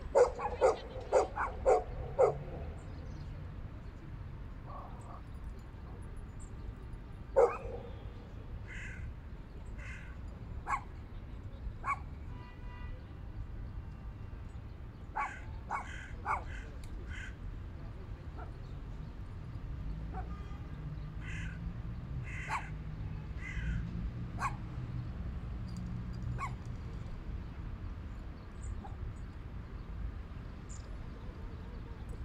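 A quick run of about six loud, sharp animal calls, a dog's barks or a crow's caws, in the first two seconds, one more loud call a few seconds later, then scattered fainter calls through the rest.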